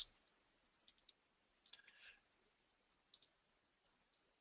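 Near silence with a few faint clicks from operating the computer, the loudest small cluster a little under two seconds in.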